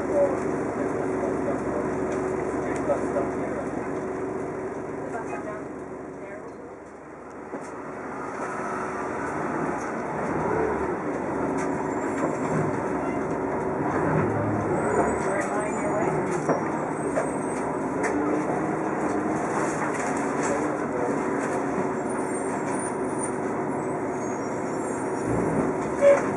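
Cabin noise of a TTC Orion V city bus under way: steady engine and road noise with a constant hum. It eases off to a low point about seven seconds in, then builds again as the bus picks up speed.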